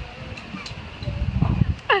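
Wind rumbling on the microphone, with a short, rising, warbling bird call near the end.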